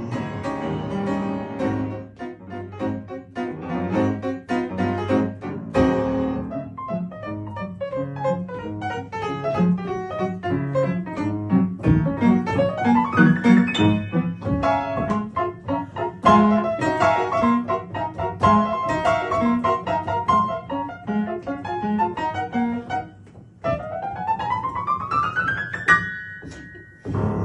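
Upright piano played solo in a fast instrumental break of chords and runs, with a rising sweep up the keyboard about halfway through and another near the end.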